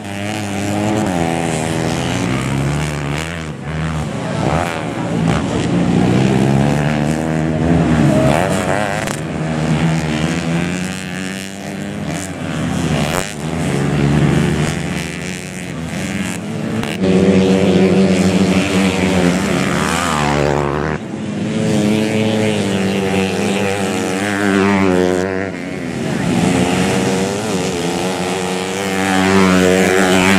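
Several dirt bike engines racing on a dirt track, revving hard with their pitch repeatedly climbing and dropping as riders open and close the throttle, sometimes overlapping as bikes pass.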